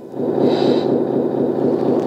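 Simulated engine running sound from an RC truck sound module, played through a small speaker, turned up sharply about a quarter second in and then running steadily at the louder level.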